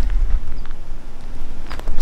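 Low, steady rumble of wind buffeting the microphone, with a few faint clicks near the end.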